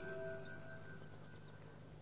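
Faint closing passage of a techno track: several held electronic tones ring out and fade away over about the first second, above a low steady hum. A row of faint, short high blips follows in the second half.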